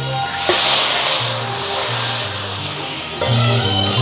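Chunks of meat tipped from a wire strainer into a hot wok, hitting the hot fat with a sudden loud hiss about half a second in that slowly dies away over about three seconds. Background music with bass and guitar runs underneath.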